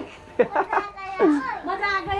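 Excited voices of a small group, a child's high voice among them, in short calls with pitch sliding up and down.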